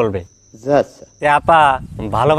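A steady, high-pitched insect call, heard plainly in a pause in a man's speech during about the first second, with his voice returning in short bursts around and after it.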